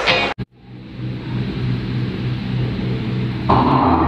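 Music that stops abruptly within the first half second, a brief silence, then a low, steady hum that fades in. Louder music comes in about three and a half seconds in.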